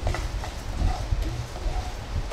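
Sesame seeds being stirred with a plastic spoon as they dry-roast in a non-stick frying pan: a few light, irregular clicks and scrapes over a low rumble.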